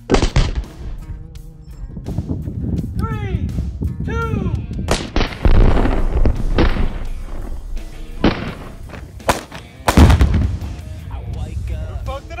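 Gunfire from several shooters, with loud blasts as targets on the range explode, each blast followed by a long rumble. The biggest blasts come about five seconds in and again about ten seconds in.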